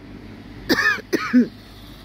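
A man clearing his throat in two short voiced bursts about a second in.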